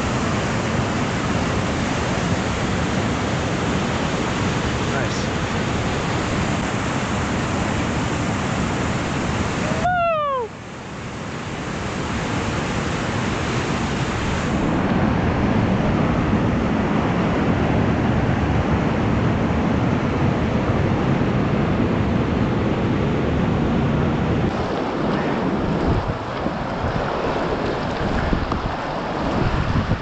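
Whitewater rapids rushing over rock ledges, a loud steady wash of water. About ten seconds in it dips briefly, with a short falling tone.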